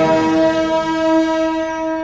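Symphony orchestra holding one steady chord in the wind instruments, while higher ringing overtones fade away near the end.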